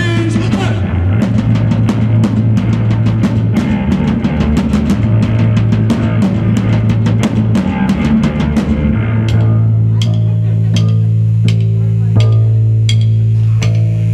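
Instrumental break of a live rock song: electric bass guitar playing a low riff under quick, driving hits on a single drum struck with sticks. About two-thirds of the way through, the drumming thins to sparse hits while the bass holds longer notes.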